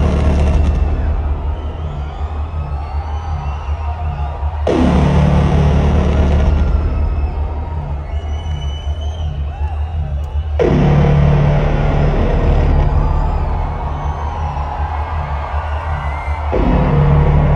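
Loud arena intro music over the PA: a deep droning bass with a pulsing low note, broken by a huge booming hit that dies away about every six seconds, twice here. The crowd cheers and whistles over it.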